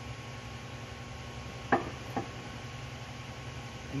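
A carved calcite piece set down on a workbench: a sharp knock a little under two seconds in and a softer one about half a second later, over a steady low hum of room noise.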